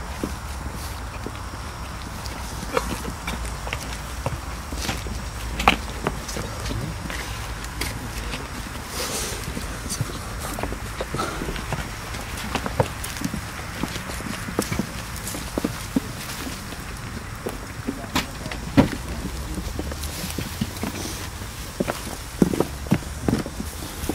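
A group of people moving about: footsteps and shuffling, faint indistinct voices and scattered short knocks, over a steady low rumble.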